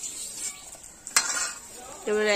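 A flat metal spatula clatters once against an aluminium bowl of fried paneer about a second in, with a few lighter scrapes after it, over a faint steady hiss.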